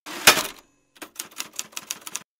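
Typewriter sound effect: a brief rushing burst, then a quick run of about eight sharp key strikes, some seven a second.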